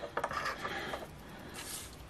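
Paper scratch-off tickets being handled and slid across a wooden tabletop: faint light rubbing and small clicks, with a brief rustle near the end.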